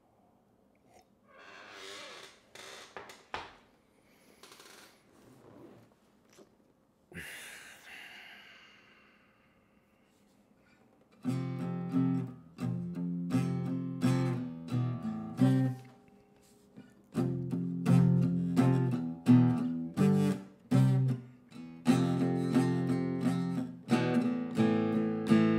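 Soft breathy noises from drinking and moving. About halfway through, an acoustic guitar starts being strummed in chords, pausing for a moment before it carries on.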